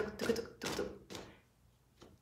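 A woman's breathy, half-whispered voice: a few short aspirated 'h' puffs of breath in the first second, trailing off into quiet.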